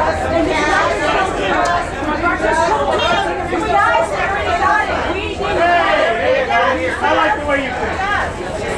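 Several voices talking over one another: a steady, crowded chatter with no single clear speaker.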